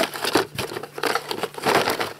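Rustling and crinkling of packaging as cables and LED bulbs are handled in a cardboard box: a run of irregular small crackles and soft knocks.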